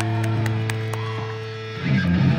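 Live rock band with electric bass and guitar: a held chord rings and fades slightly, then the band comes back in with a new loud chord near the end.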